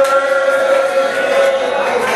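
A man's voice intoning a prayer in a chanted, sung style, holding one long steady note.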